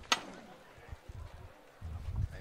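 A single sharp metallic knock of the llamador, the paso's door-knocker, at the very start: the last of the knocks that signal the costaleros to lift. Then a low crowd murmur, with voices and shuffling near the end.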